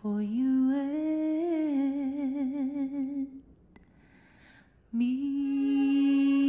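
A woman singing solo and unaccompanied: one long held note with vibrato, a pause of about a second and a half, then another held note starting near the end.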